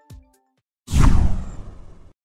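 The background music's beat stops right at the start, then after a short silence a loud whoosh-and-hit sound effect sweeps downward and fades over about a second: a logo sting.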